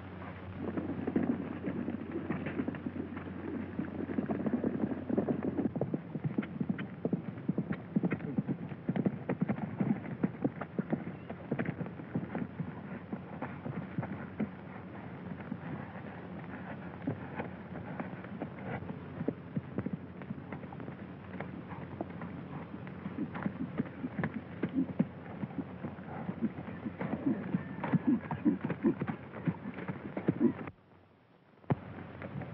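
Horses' hoofbeats, a dense and irregular clatter of many hoof strikes, over a steady low hum.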